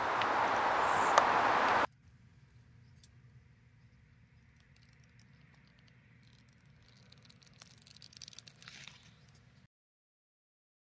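Steady outdoor background noise for about two seconds that cuts off suddenly. Then near silence: a faint low hum and a few faint ticks.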